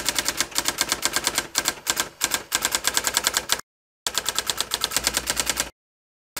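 Typing sound effect: rapid key clicks, about nine a second, as on-screen text is typed out letter by letter. The clicks break off twice for about half a second.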